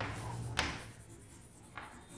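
Chalk scratching on a chalkboard as a word is written, with a sharp stroke about half a second in and a fainter one near the end.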